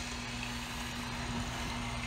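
A steady low hum, one unchanging tone, over faint background noise: room tone.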